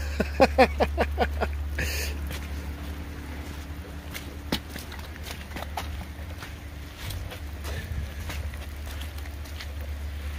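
A man laughs briefly, then footsteps crunch over wood chips and sawdust, with scattered light clicks over a steady low hum.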